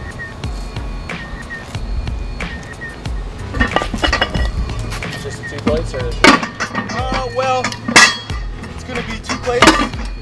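Iron weight plates clanking against each other and the metal sleeves as they are loaded onto a farmer's-walk handle frame: several sharp metal clanks, the loudest about eight seconds in.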